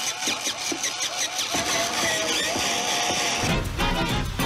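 Background music: a quick repeating melodic figure of about four swoops a second, then a single held, wavering high note. A heavy low sound comes in shortly before the end.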